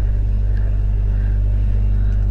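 A steady low electrical hum with evenly spaced overtones running under a wordless pause in the narration, part of the recording's background.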